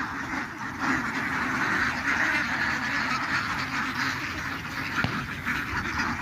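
A large flock of domestic ducks quacking together: a steady, dense mass of many overlapping calls.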